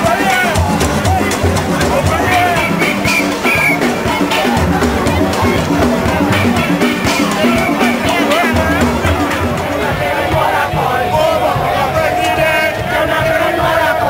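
Steel band playing on the road with a drum-kit beat, the pans' repeated notes over a thudding bass. Crowd voices and shouts run through the music, growing stronger in the last few seconds.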